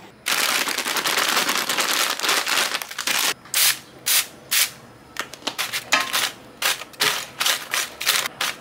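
Aerosol cooking-oil spray hissing over small dried fish in an air fryer basket: one long spray of about three seconds, then a run of short bursts, coating the fish so they fry crisp.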